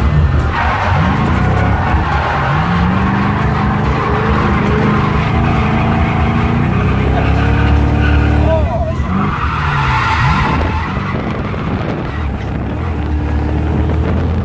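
Ford Fox-body Mustang drifting, heard from inside the cabin: the engine revs rise and fall under throttle, with a deep drop and climb back about two-thirds of the way through, over the steady squeal and hiss of sliding tyres.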